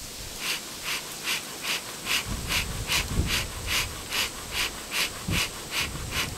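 Dadant bee smoker's bellows pumped in a steady rhythm, about two and a half puffs a second, each puff a short hiss of air driving smoke out of the nozzle as the beekeeper works it up to a good smoke.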